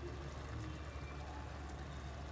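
Faint, steady low hum with a light sizzle from egg masala gravy simmering in a kadai.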